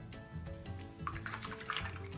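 Background music with steady held notes. From about a second in, short wet scrapes and swishes of a paintbrush working in a tub of thick paint.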